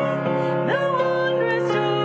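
A hymn sung by voices over instrumental accompaniment, with long held notes.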